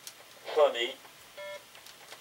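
A short voice sound with no words made out, then about a second later a brief electronic beep: one steady tone lasting about a quarter of a second.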